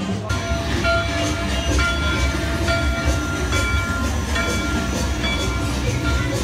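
Dark-ride soundtrack playing: a run of held, whistle-like notes, each about a second long, over a steady low rumble.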